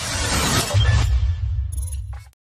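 Sound-effect sting for an animated logo ident: a dense, glittering rush of noise that fades out about halfway through, giving way to a low, deep tone that comes in under it.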